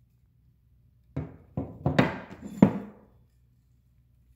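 A few sharp knocks of tomahawks being set down and shifted on a wooden tabletop, about five in a second and a half, starting about a second in.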